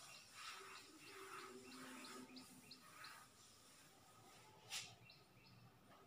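Near silence with faint, quick high chirps of a small bird a few times a second, and one short sharp click near the end.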